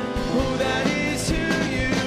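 A live worship band playing: a man sings the lead over a strummed acoustic guitar, electric bass and a drum kit.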